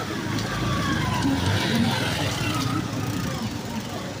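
A motor vehicle passing close by with its engine running, and people's voices in the background.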